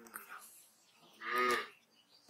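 A single short pitched vocal call, about half a second long, a little past the middle.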